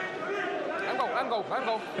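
Speech only: men's voices calling out, the pitch swinging widely up and down.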